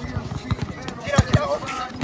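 Basketball bouncing on an outdoor hard court: a few dull thuds, two of them close together just after a second in.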